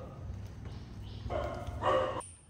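A baby monkey gives two short calls in the second half, the second one louder.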